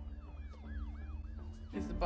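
Police sirens wailing over film score: one siren in a fast rising-and-falling yelp, about three cycles a second, and another in a slow wail above it. A voice cuts in near the end.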